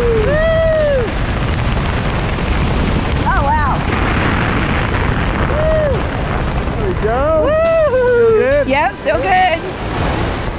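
Wind rushing over the microphone as a tandem parachute swings through steep turns, with a woman's whoops and squeals rising and falling in pitch, a few short ones and then a longer string near the end.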